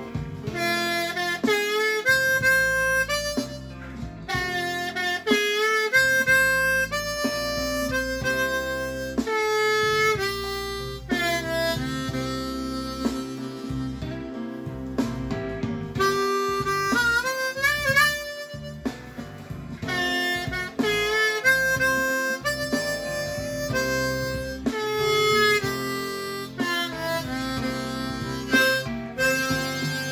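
C diatonic harmonica played in first position: a bluesy lick of short notes, several bent and wavering in pitch, over a blues backing track.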